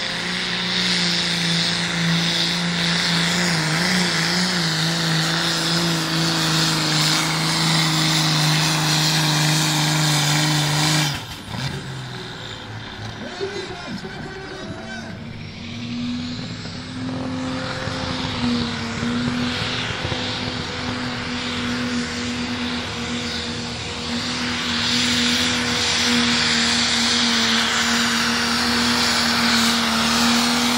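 Turbocharged diesel engines of pulling tractors held at high, steady revs under full load as they drag the weight sled. About eleven seconds in the engine sound breaks off into a quieter stretch. From about seventeen seconds another tractor's engine comes in, steady at a higher pitch.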